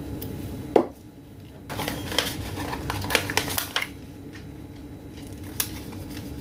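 Hands pressing a sticker onto a small folded paper card case, the paper rustling and crackling under the fingers, with a sharp tap about a second in and another near the end.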